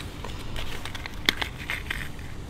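Light rustling and a few sharp clicks from hands handling small fishing tackle.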